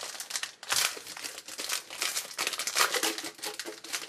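Crinkling and rustling of trading-card pack foil and cards being handled: an irregular run of crackles, loudest about a second in and again near three seconds.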